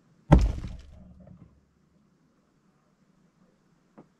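A single loud thump a third of a second in, its low rumble dying away over about a second, then near silence.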